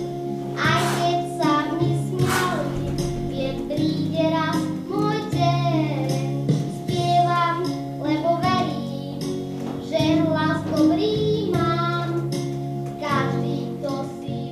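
A young boy singing a children's song into a microphone over instrumental accompaniment.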